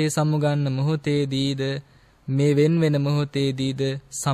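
A Buddhist monk chanting in a man's voice, holding long, nearly level notes in two phrases with a short break about two seconds in.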